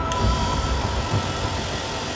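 Bench polishing motor spinning a radial bristle disc against a brass pendant: a steady brushing hiss.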